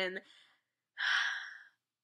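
A woman's single breathy gasp, overcome with emotion. It starts sharply about a second in and fades away over most of a second, after the last word of her speech.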